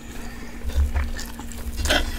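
Close-miked chewing of a mouthful of fried ramen noodles, wet mouth sounds with low thumps. Near the end a metal spoon scrapes the nonstick pan.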